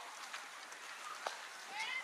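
High-pitched shouts from young players, rising in pitch, break out near the end over a low murmur of distant voices, with a single faint knock a little past halfway.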